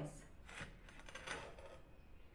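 Ceramic tile strips clinking and rubbing against each other as a panel of them is laid over another, in two faint, short clusters about half a second and a second and a half in.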